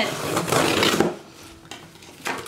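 A knife blade slitting the packing tape along a cardboard box's seam: a rasping scrape for about a second, then it goes much quieter.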